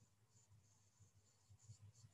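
Near silence: faint room tone with low hum and hiss.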